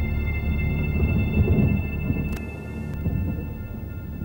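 A deep rolling rumble like thunder with several steady high tones held over it, easing a little about halfway through.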